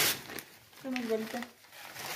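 Sheets of newspaper rustling and crinkling as they are handled and crumpled by hand into stuffing. A sharp rustle comes right at the start, and a brief voice is heard about a second in.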